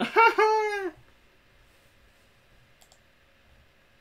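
A man's short high-pitched vocal exclamation, made with his hand over his mouth: a brief note, then a longer one that rises and falls, over about a second. A couple of faint clicks follow a little later.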